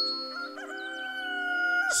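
A rooster crowing as a sound effect over soft background music: one long call held for over a second that falls away near the end. A short bright chime sounds right at the start.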